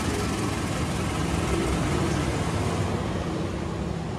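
Diesel-electric locomotive and passenger carriages passing close by as the train pulls into the platform: engine running and wheels on the rails, a steady, loud noise.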